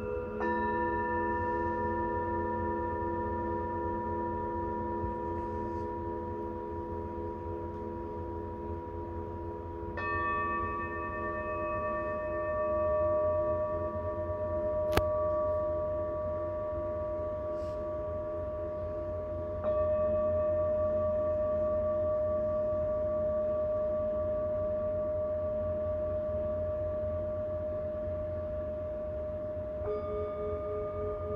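Tibetan singing bowls, a mix of moon and antique bowls, struck one at a time with a mallet about every ten seconds. Each strike layers a new note over the long ringing of the earlier ones, and the tones pulse slowly as they fade. There is a single sharp click near the middle.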